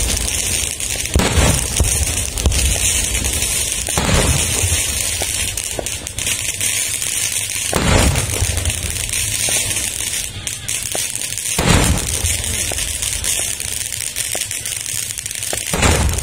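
Traditional festive cannons (meriam) firing in the distance: five booms about four seconds apart, each with a short echoing tail, over a steady high hiss.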